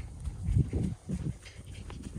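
An animal's low calls, several short ones in quick succession.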